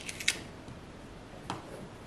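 Quiet kitchen handling sounds of a teaspoon and halved pears on a wooden cutting board: a few faint scrapes at the start, then a single light click about one and a half seconds in.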